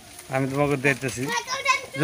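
Voices talking and calling out, starting about a third of a second in after a quieter opening.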